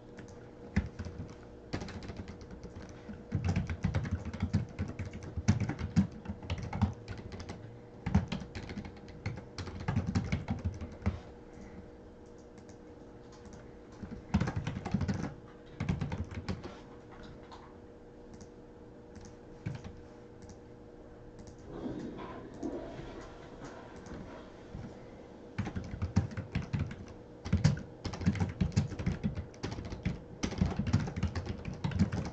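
Computer keyboard being typed on in runs of rapid keystrokes, broken by pauses of a few seconds, over a faint steady hum.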